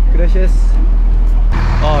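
Old school-bus-style bus engine running with a loud, steady low rumble, heard from inside the cabin, with brief voices over it. About a second and a half in, the sound changes to beside the bus, with the engine still running.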